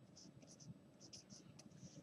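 Faint, short strokes of a Sharpie permanent marker writing a small label on paper.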